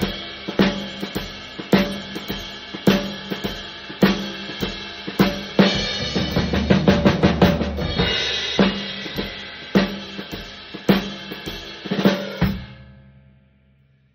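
Yamaha drum kit with Paiste cymbals playing a jazz shuffle groove. The shuffle is played as dotted eighths and sixteenths over a swing ride cymbal, with hi-hat and accents on two and four and the bass drum underneath. A dense triplet fill comes about six to seven and a half seconds in, and a final hit near the end rings out and fades away.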